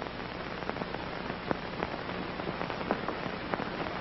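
Steady hiss with scattered clicks and crackles: the surface noise of an old film's worn soundtrack.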